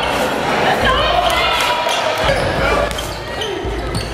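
Live basketball game sound in a gym: voices of players and spectators echoing in the hall, with a basketball bouncing on the court.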